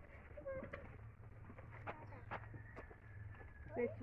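Quiet outdoor background with scattered faint clicks and a faint animal call: one drawn-out high note held for about a second past the middle, over a low steady hum.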